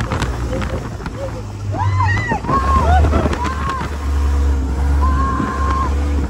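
Dune buggy engine running hard over sand, its hum growing louder about halfway through, with wind rushing over the microphone. Passengers yell and scream over it, with one long held scream near the end.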